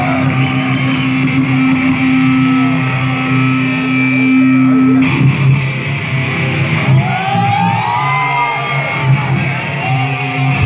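Live rock band playing an instrumental passage on electric guitars, bass and drums: a steady low note is held for about five seconds, then gliding, bending guitar notes come in.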